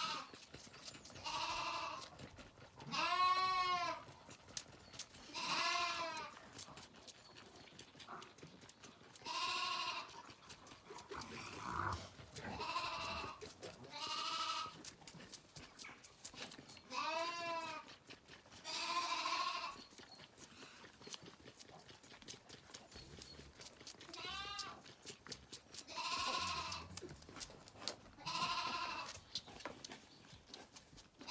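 Zwartbles lamb bleating over and over, about a dozen wavering calls spaced a second or a few seconds apart, with one longer pause partway through.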